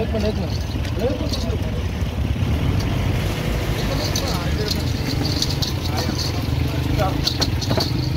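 A steady low engine rumble, like a vehicle idling, with people talking in the background and scattered short clicks and knocks.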